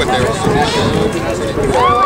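Several people talking at once, their voices overlapping, with no single speaker clear.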